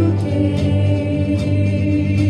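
Live worship band playing a song: women's voices singing into microphones over piano, electric guitars, bass guitar and drums, with cymbal strikes and sustained held notes.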